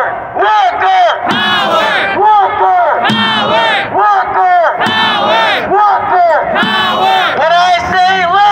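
Protesters shouting a rhythmic call-and-response chant, a lead voice through a megaphone answered by the crowd in short, repeated shouted phrases.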